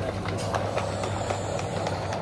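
Small wheels of a pulled shopping basket rolling over a tiled supermarket floor, giving a steady rolling noise over the store's background hum.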